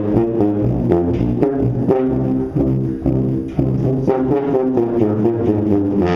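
A small group of sousaphones playing a low brass fanfare in parts, a run of short detached notes in a quick rhythm.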